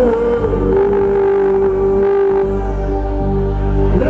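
Live band music: one long held note that slides down a little at the start and then stays steady for about three seconds, over the band's steady low accompaniment.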